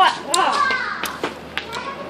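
Children's voices calling out in the first moments, followed by scattered sharp taps.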